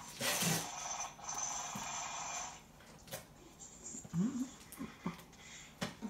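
Wrapping paper being torn and crumpled off a large gift box for about two and a half seconds, then a brief rising voice sound and a few light knocks.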